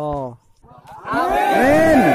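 A sung note breaks off about half a second in. After a short near-silent gap, several men's voices give a long drawn-out shout that rises and then falls in pitch.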